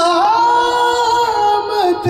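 A man singing an Urdu naat solo, holding one long high note that swells up just after the start and falls away near the end.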